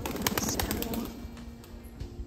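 A quick burst of pigeon wing flaps, a rapid clatter lasting about a second at the start, over background music.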